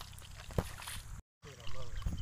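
A hoe chopping into waterlogged paddy mud, with one sharp strike about halfway through over a low rumble of wind on the microphone. The sound cuts out briefly, then a voice comes in near the end.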